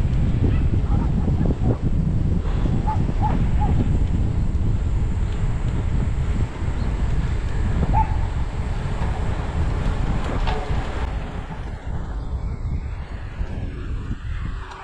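Wind buffeting the microphone of a camera on a moving road bicycle: a steady low rumble that eases a little in the last few seconds.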